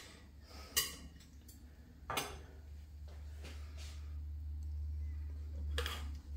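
A knife and fork clinking lightly against a ceramic plate a few times while cutting thin sliced beef, with a low steady rumble building through the second half.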